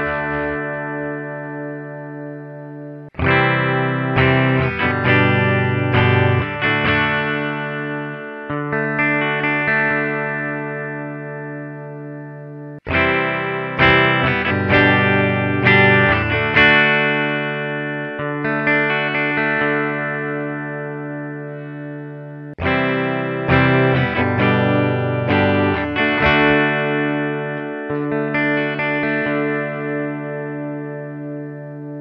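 Electric guitar played through a Blackstar Amplug 2 Fly headphone amp on its clean channel with no effects. The same short strummed-and-picked phrase is played three times, starting about three, thirteen and twenty-three seconds in, each letting its notes ring out and fade. The ISF tone control is turned further up for the later passes, reaching fully up by the last.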